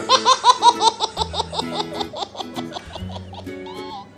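A baby laughing in a quick run of short laughs, about six a second, fading out after about two seconds.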